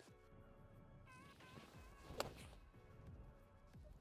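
A single sharp click of a 52-degree wedge striking a golf ball, a little past halfway, over soft background music.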